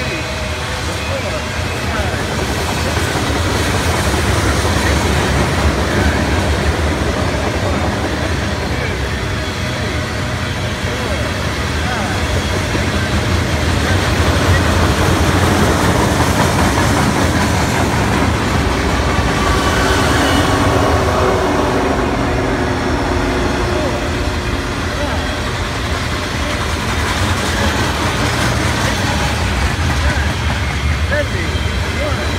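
Norfolk Southern mixed freight train rolling past close by: the steady rumble and rattle of freight cars on the rails. It swells around the middle as the two mid-train diesel locomotives pass.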